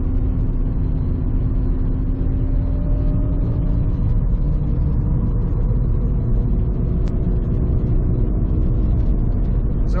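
Subaru BRZ's rebuilt FA20 flat-four engine running at a steady cruise, heard from inside the cabin over a low, even road rumble. A steady drone in the engine note fades out about four seconds in.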